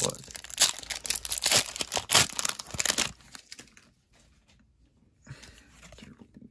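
Foil Pokémon card booster pack wrapper being torn open and crinkled in the hands, a dense run of tearing and crackling that stops about three seconds in.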